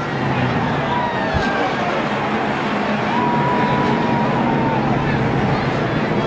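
NASCAR stock cars' V8 engines and track noise during a multi-car crash on the front stretch, a steady dense drone. A thin high whine is held for about two seconds in the middle.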